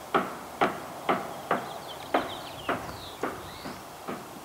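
Footsteps on a hard path, about two steps a second, each a sharp knock.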